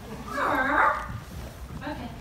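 A person's voice in a large hall: one brief high, wavering vocal sound about half a second in.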